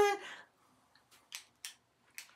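Mostly quiet, with two short, faint clicks about a third of a second apart, a little past the middle.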